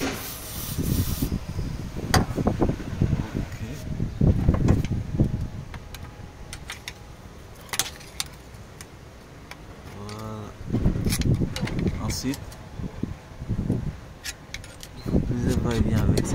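A short hiss of aerosol penetrating oil sprayed through its straw onto a seized turbocharger butterfly linkage, then scattered metallic clicks and knocks as the linkage is handled to free it.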